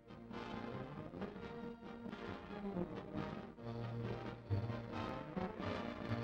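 Background music on the soundtrack, with a low held bass note from a little past halfway through.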